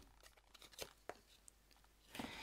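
Near silence, broken by two faint short ticks about a second in from paper die cuts being handled.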